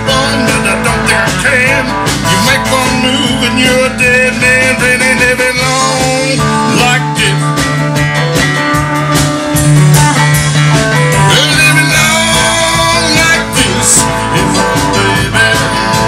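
Live country-rock band playing an instrumental passage with no vocals: an electric guitar lead with bent notes over drums, bass and keyboard.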